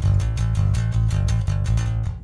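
Fazley Mammoth seven-string electric bass played with fast repeated plucked notes, about six a second, with the onboard EQ's treble turned up for a bright, aggressive tone. The playing stops at the end.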